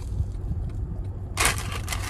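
Flaky croissant crust crunching as it is bitten and chewed, loudest as one short crackly burst near the end, over the steady low rumble of a car's cabin.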